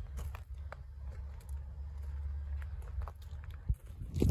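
Footsteps on a gravel and dirt lot, heard as scattered short crunches, over a steady low rumble.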